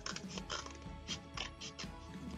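Scissors snipping through thin cereal-box cardboard in a rapid series of short, crisp cuts, with faint background music.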